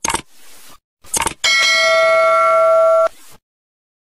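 Subscribe-button animation sound effect: a short click about a second in, then a bell ding that rings steadily for about a second and a half and cuts off suddenly.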